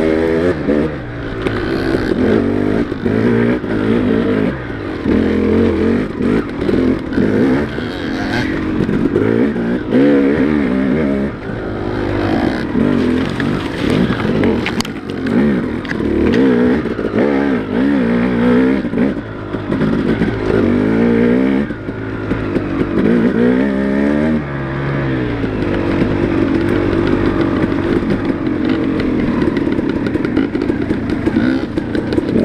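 Dirt bike engine revving on a trail ride, its pitch rising and falling over and over as the throttle is opened and closed.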